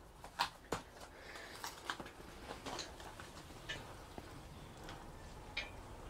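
Faint rustling with scattered light clicks and ticks as hands move through the leaves of a potted coriander plant.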